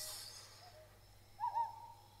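A single owl hoot about one and a half seconds in, part of a quiet forest ambience, after a soft breathy exhale at the start.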